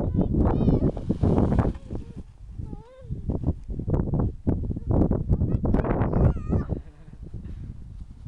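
A young child's high-pitched squeals and short calls, a few separate ones, over loud, uneven rumbling noise.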